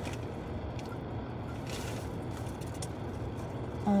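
Steady low rumble inside a parked car's cabin, with a brief rustle, as of a plastic bag being handled, a little under two seconds in.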